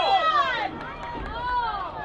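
Voices shouting at a lacrosse game, two long drawn-out calls one after the other, over faint outdoor background noise.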